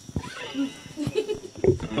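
Quiet, broken-up human voice sounds, with a few light taps and clicks in between.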